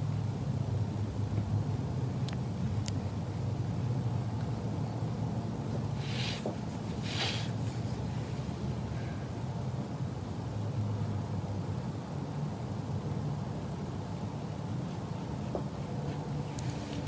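A steady low hum of background noise, with two short, soft scratchy strokes about six and seven seconds in, fitting colored pencil shading on sketchbook paper.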